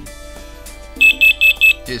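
FireAngel FA3322 carbon monoxide alarm sounding a set of four short, rapid high-pitched beeps about a second in, part of its test-button self-check of the sounder.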